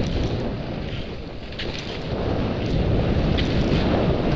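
Wind rumbling on the microphone of a camera moving along a cross-country ski track, with a few faint clicks scattered through it.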